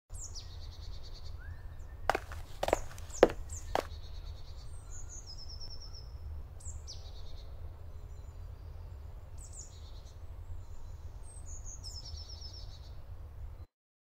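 Songbirds singing in woodland: short high song phrases repeating every few seconds over a steady low rumble. About two seconds in come four sharp knocks, roughly half a second apart, the loudest sounds here. The sound cuts off abruptly just before the end.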